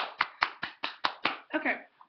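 One person clapping hands quickly and steadily: about seven sharp claps, roughly five a second, stopping a little past a second in.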